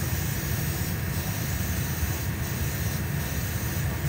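A steady low mechanical drone, the kind a spray booth's exhaust fan makes, under the faint hiss of an airbrush spraying 2K clear coat onto a model car body.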